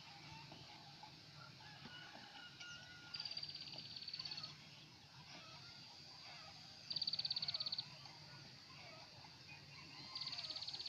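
Faint outdoor ambience with distant animal calls. Two short, rapid, high-pitched trills stand out, one about three seconds in lasting just over a second and one about seven seconds in lasting under a second.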